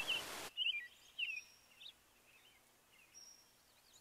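A few faint, short bird chirps, mostly in the first two seconds, with a thin high note heard twice. A low steady hiss cuts off suddenly about half a second in.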